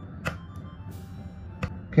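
Egg knocked flat against a wooden cutting board to crack the shell: a sharp tap near the end, with a lighter click about a quarter second in. Quiet background music runs underneath.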